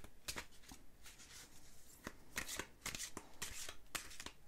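A deck of large oracle cards shuffled by hand: a run of short papery swishes and slaps, a few each second, as the cards slide and are pushed into one another.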